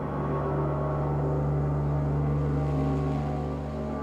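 Ambient experimental music: a steady low drone with sustained, ringing tones layered above it.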